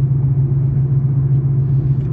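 Steady low drone of a car's engine and road noise, heard from inside the cabin.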